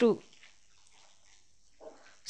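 Speech only: a man's voice says the word "two" with falling pitch, then near silence before he starts speaking again.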